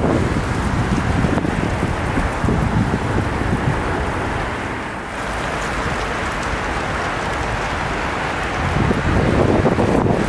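Wind buffeting the microphone: a loud, uneven rushing noise, heaviest in the low end, with a brief lull about halfway through.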